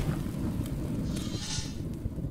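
Low rumbling, crackling noise slowly fading away, the tail of a deep boom, like a thunder sound effect.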